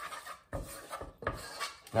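Wooden spoon stirring fast in a saucepan, scraping the pan bottom through a runny egg-and-fat sauce in several quick, irregular strokes.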